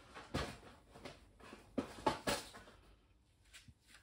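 Handling noises on a workbench: a few short knocks and clatters of objects being moved and set down, the loudest about two seconds in.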